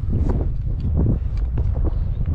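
Wind buffeting the microphone, a loud continuous low rumble.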